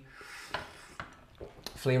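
Tea ware being handled between speech: a short soft hiss, then three light, sharp clinks of glass and porcelain about half a second, one second and a second and a half in.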